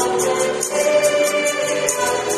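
Youth choir singing a Tagalog church hymn through microphones, several voices holding sustained notes together. A light percussion tick keeps a steady beat about four times a second above the voices.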